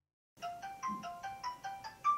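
A phone ringtone ringing out on an outgoing call: a quick melody of short, bright notes, starting about a third of a second in after a brief silence.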